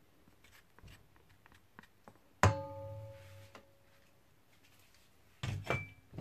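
A sharp metallic knock that sets a large stainless steel mixing bowl ringing, a clear bell-like tone that dies away over about a second and a half. Light clicks come before it, and a few heavier clunks follow near the end.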